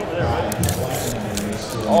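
Mostly speech: background voices and chatter in a large hall, with a man's drawn-out 'oh' starting right at the end.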